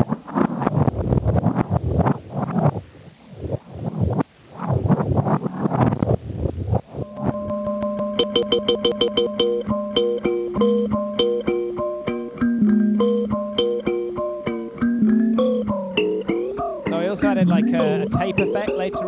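A cheese grater scraped against a contact mic, its grating run through a DIY digital glitch-delay effect; then, about seven seconds in, kalimba notes played through the same effect, chopped into rapid stuttering repeats and, near the end, wobbling up and down in pitch.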